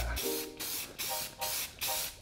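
Aerosol spray paint can hissing in short bursts, several in quick succession, about three a second.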